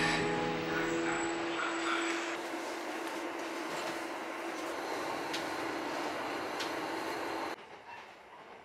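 Background music fading out over the first two seconds, then the inside of a diesel railcar: a steady engine hum with a few light clicks, cut off abruptly near the end.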